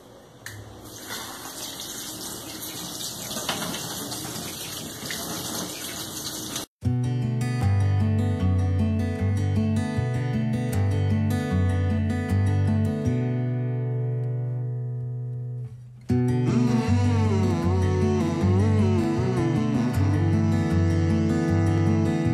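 Kitchen tap running water over rice in a metal sieve for about seven seconds while the rice is rinsed. The water stops abruptly and background guitar music takes over for the rest.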